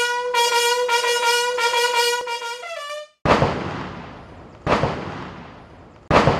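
A brass call holds one long note and then moves to higher notes, stopping about three seconds in. Two cannon shots of a ceremonial gun salute follow, about a second and a half apart, each fading slowly in echo.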